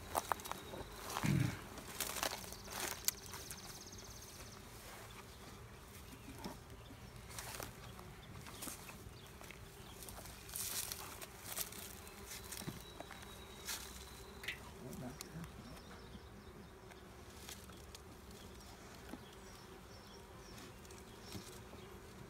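Honeybees buzzing as a steady hum around an open hive, with scattered knocks and scrapes of the wooden hive boxes and lid being handled while a super is put back on.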